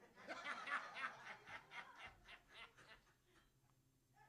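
A person laughing softly: a run of quick chuckles that starts just after the beginning and fades out over about three seconds.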